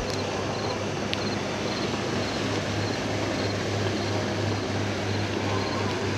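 Steady low engine drone with a constant hum. A small click comes about a second in.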